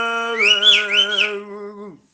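A man singing one long held note that ends just before the end, with two short high rising-and-falling glides sounding over it about half a second to a second in.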